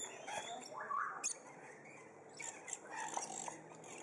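Several birds giving short, scattered chirps and calls, with a sharp click about a second in.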